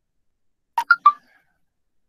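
A short electronic notification chime about a second in: three quick tones at different pitches, the middle one highest.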